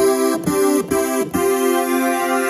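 Nord Stage 3 synth engine playing a super saw patch (its Super Wave Saw oscillator): four chords struck in quick succession, the last one held. The detuned stack of sawtooth waves gives it a full, thick tone.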